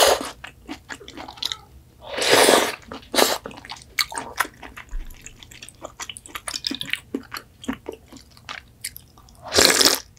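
Close-up eating sounds of seafood ramen: slurping broth and noodles off a spoon, with a long slurp about two seconds in and another near the end, and many small wet chewing clicks in between.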